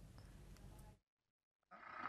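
Near silence: faint low background noise that cuts off to dead silence about halfway through, with a faint sound starting to fade in near the end.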